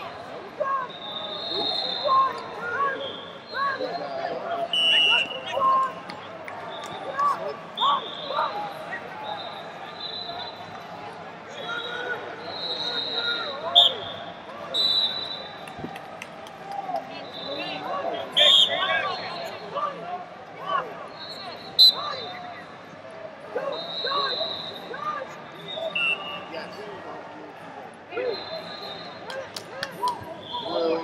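Wrestling shoes squeaking on a rubber mat in short high chirps every second or two, with a few sharp slaps as the wrestlers hand-fight, over a steady din of voices and shouting coaches in a large hall.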